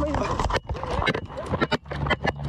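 Scuffling and quick footsteps, with the body-worn camera knocking and rustling, in a rapid, irregular run of knocks and rustles during a struggle between police and a suspect.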